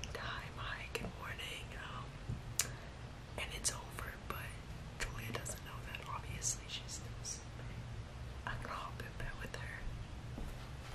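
A man whispering close to the microphone, breathy words with sharp hissing sounds, over a low steady background hum.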